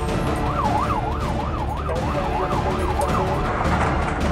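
Fire engine siren on a fast yelp, its pitch swinging up and down about two to three times a second. It starts about half a second in and stops shortly before the end, over background music.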